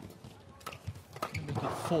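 Badminton rackets striking the shuttlecock in a fast rally, a run of sharp cracks a fraction of a second apart, mixed with players' footfalls on the court.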